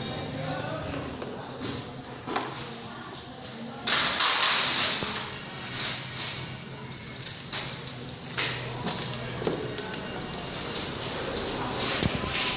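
Busy workshop background: music and voices, with scattered knocks from tools and a loud hissing burst about four seconds in that lasts a second or so.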